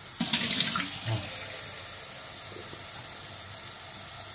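Kitchen tap running into a cup, filling it with water. The stream is loudest in the first second as it hits the empty cup, then runs steadily.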